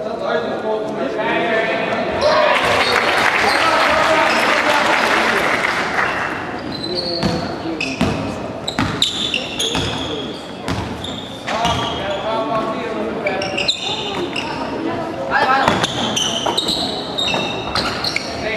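Youth basketball game in a gym hall: spectators' voices swell into shouting and cheering about two seconds in for a few seconds, then a basketball is dribbled on the wooden court with repeated bounces, short high sneaker squeaks and players' calls.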